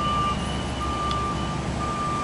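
A vehicle's reversing alarm beeping: a single steady tone, three beeps at about one a second, over a low steady rumble.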